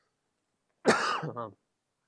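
A man clearing his throat with a short, sharp cough about a second in, running straight into his voice.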